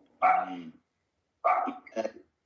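A dog barking twice, the barks about a second apart, heard through a video call's audio.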